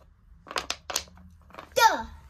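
Wooden letter piece knocking against a wooden alphabet puzzle board as it is pushed into its slot: about four quick, light clacks, about half a second in.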